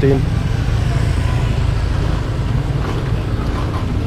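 Street traffic of small motorcycles and scooters riding past close by, a steady low rumble of engines and tyres.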